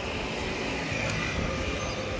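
Steady city street background noise: a low, even traffic rumble with no distinct events.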